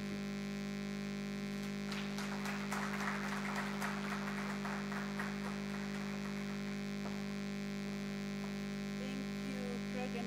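Steady electrical mains hum from the hall's microphone and sound system, with a stretch of faint rustling noise from about two to six seconds in.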